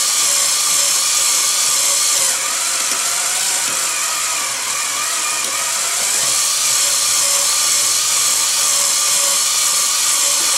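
Cordless drill motor whining steadily with its trigger taped part-way down for a slower speed, driving a Woodward Fab bead roller through a chain and gears while a strip of sheet metal is rolled through. The sound sags slightly a couple of seconds in, then steadies again.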